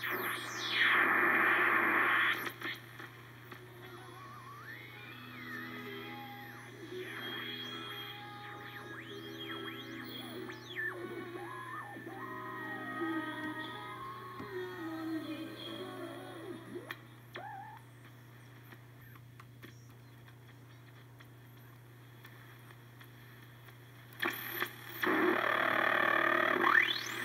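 A homemade shortwave receiver, a regenerative set, being tuned across the band through its speaker: loud static at first, then sliding whistles and brief snatches of music as stations pass, over a steady low hum. The static comes back loud near the end.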